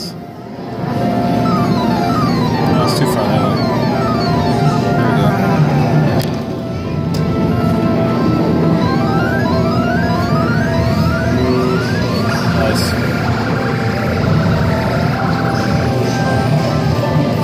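Electronic arcade game music, full of quick rising and falling tone sweeps that repeat throughout.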